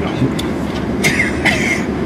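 Steady low rumble inside a car cabin from the idling car and its air-conditioning fan. A short laugh comes about a second in.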